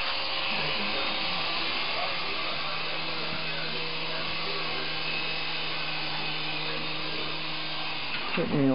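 Syma S107G coaxial mini RC helicopter's electric motors and rotors whirring steadily in flight, close to the microphone, as it climbs and hovers.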